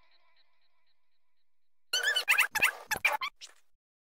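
Producer-tag audio samples previewed from the FL Studio browser. A faint echo tail repeats and dies away. About two seconds in comes a short burst of high-pitched, warbling, pitch-bending sound lasting about a second and a half.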